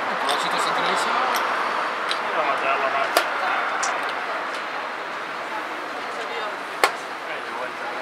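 Two sharp clicks of blitz chess play, pieces and chess clock, about three and a half seconds apart, over a steady murmur of voices.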